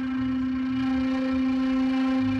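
Concert flute holding one long, steady note low in its range.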